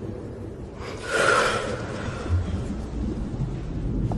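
A person drawing one deep breath in, about a second in, to hold it for a breath-holding game, over a low steady rumble.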